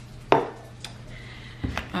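A few sharp knocks of kitchenware on a hard surface: a loud one about a third of a second in, a small click a little later, and a duller thump near the end, over a low steady hum.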